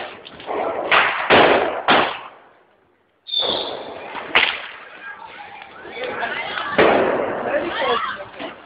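Street crowd noise with voices and a series of loud, sudden bangs, the sharpest a single crack about four and a half seconds in; the sound cuts out for a moment shortly before that.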